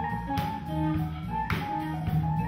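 Live funk band playing an instrumental passage: drum kit with cymbals, electric bass, electric guitar and baritone saxophone together in a steady groove.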